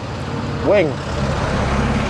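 A motor vehicle's engine running with a low, steady drone, growing louder from about a second in.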